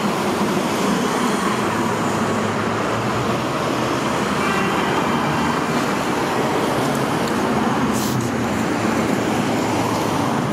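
Steady, continuous noise of freeway traffic, an even wash of tyre and engine sound with no single vehicle standing out.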